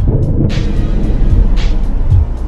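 Background music with a steady beat of quick high ticks and deep thuds over a low rumble.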